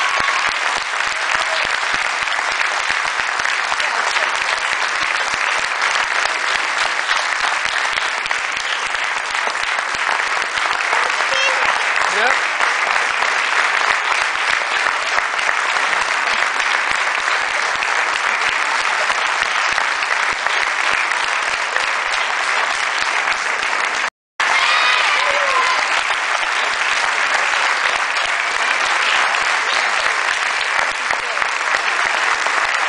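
Audience applauding steadily, with occasional whoops and cheers rising over the clapping. The sound cuts out for a split second about three-quarters of the way through.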